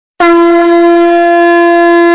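A conch shell (shankh) blown in one long, steady, loud note that starts abruptly just after the beginning.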